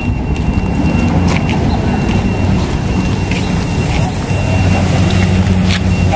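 Van engine idling close by, a steady low hum that gets a little louder in the second half, with a few light clicks over it.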